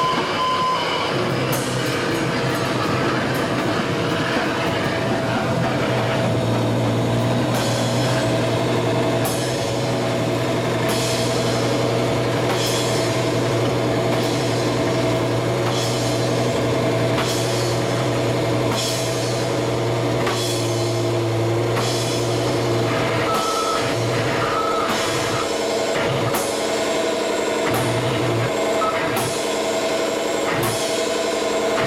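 Live noise music from an electronics-and-drums duo: a loud sustained electronic drone with steady held tones. Sharp drum and cymbal strikes come about once a second from about seven seconds in, and the deep low hum beneath cuts out about two-thirds of the way through.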